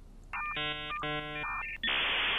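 Edited-in electronic sound effect: two buzzy half-second tones with short high beeps around them, then a burst of static-like hiss near the end, telephone-style electronic signalling.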